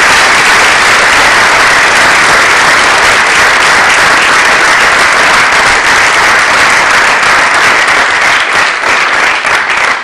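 Audience applauding, a loud, dense sound of many hands clapping that thins into scattered separate claps near the end.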